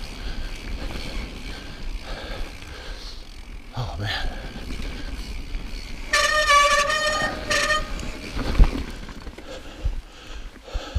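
Train horn blowing: one long blast about six seconds in, then a short one about a second later. Under it the steady low rumble of the mountain bike rolling over a dirt trail, with a sharp thud about eight and a half seconds in.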